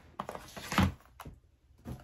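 A laptop being picked up off a desk and lowered into a coated-canvas tote: a few dull thumps and a click, the loudest a little before a second in.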